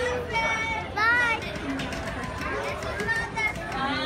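Children's high-pitched voices calling out and squealing, with one loud rising-and-falling squeal about a second in, over the steady hubbub of an amusement park.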